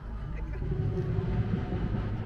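Steady low background rumble.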